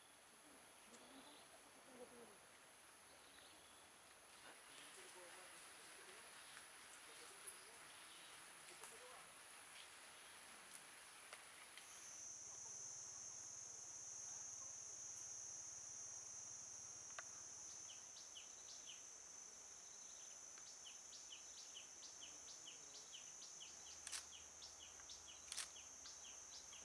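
Faint rural outdoor ambience dominated by a steady high-pitched insect drone, which drops to a lower pitch at a cut about halfway through. In the second half a short chirp repeats about twice a second, and faint distant voices are heard in the first half.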